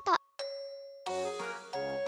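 A single bright chime rings and fades, then cheerful children's background music with a steady beat starts about a second in.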